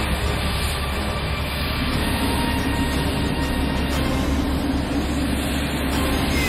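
Steady, loud rumbling roar of an animated cruise missile in flight, a sound effect for the Roketsan SOM standoff missile, with a low hum joining about two seconds in.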